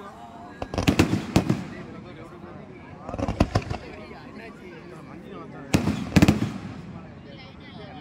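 Fireworks cake firing fan-shaped volleys of comets: three clusters of several sharp bangs each, about two and a half seconds apart.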